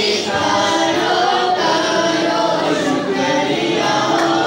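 A group of voices singing together without instruments, in long held notes.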